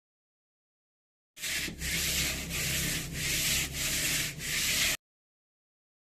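Rough concrete floor being scrubbed by hand: a rasping rub in about six back-and-forth strokes. It starts a little over a second in and cuts off suddenly near five seconds.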